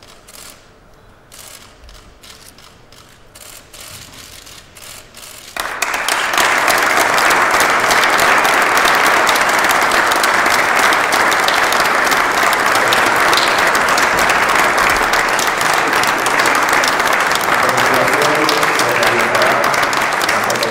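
Audience applause that breaks out suddenly about five and a half seconds in and then holds steady and loud; before it there are only a few scattered clicks. A voice comes through over the applause near the end.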